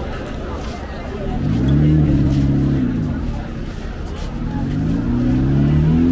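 A motor vehicle engine revving: it climbs and drops back once, then climbs again and holds high. Crowd chatter runs beneath it.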